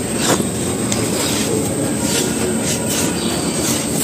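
Loose, dry sandy dirt being scraped and stirred by hand: a steady gritty rustle with a few small ticks from grains and crumbs.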